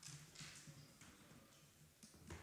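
Near silence: quiet room tone with a couple of faint, brief rustles.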